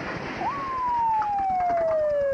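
Police car siren sounding one long wail: its pitch jumps up about half a second in, then falls slowly and steadily.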